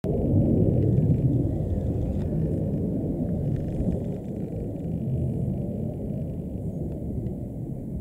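A loud, low, unsteady rumble that eases slightly toward the end.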